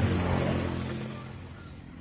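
A motor vehicle's engine passing by, loudest at the start and fading away over about a second and a half.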